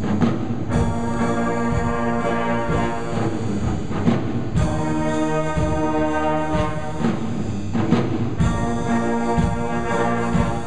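School jazz band playing a swing piece: saxophones, trumpets and trombones holding full chords over piano, with regular sharp percussive hits through the ensemble.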